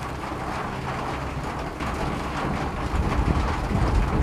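Steady low rumbling background noise with a hiss, swelling louder near the end.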